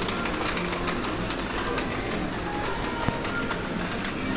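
A shopping trolley's wheels rolling and rattling steadily over a tiled supermarket floor, with faint in-store music underneath.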